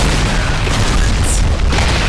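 Loud explosion and impact sound effects from an animated fight trailer: a dense, bass-heavy rumble that starts abruptly and carries on without a break.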